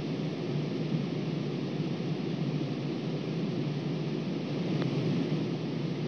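Steady outdoor background hiss on the course microphone, with a single faint tap about five seconds in as the putter strikes the golf ball.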